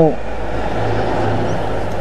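Steady low hum and hiss of the room or recording in a pause of a man's speech, with the tail of his last spoken word at the very start.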